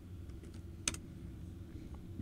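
A single sharp computer-keyboard keystroke a little before one second in, with a fainter click near the end, over a low steady background hum.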